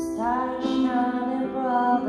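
A woman singing a slow, gentle vocal line over piano accompaniment, the phrase starting right at the beginning with a soft hissed consonant.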